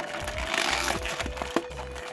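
Clicks and crackles of a clear plastic blister tray flexed by hand to free a small die-cast figure, with one sharper click about one and a half seconds in. Background music with a held note and a low beat runs underneath.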